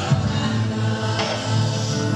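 A woman singing into a microphone over musical accompaniment with sustained low notes, amplified through the hall's speakers.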